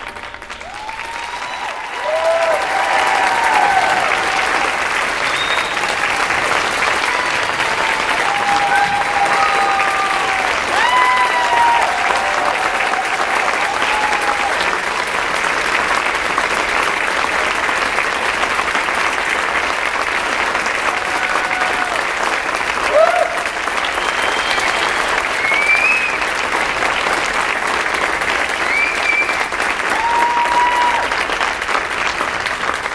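Audience applauding with scattered shouts and whoops, swelling about two seconds in and then holding steady.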